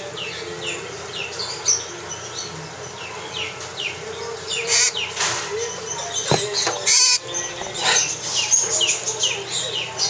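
Brown-throated conure giving a run of short, high, falling chirps, repeated two or three times a second. There are a few louder rustling bursts around the middle.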